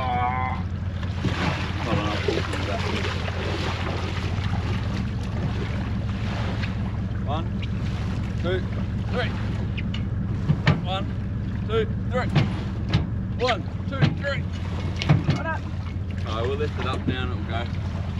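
Steady low mechanical hum of an idling tow-vehicle engine. Short faint voices come over it from about the middle on.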